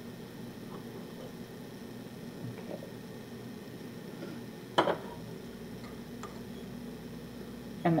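Low steady background hum, then one sharp metallic clank about five seconds in as the stainless-steel saucepan's lid is handled.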